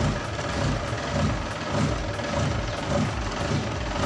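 Mitsubishi Fuso Fighter cement mixer truck's diesel engine idling with a steady low throb, still cold after standing unused for a long time.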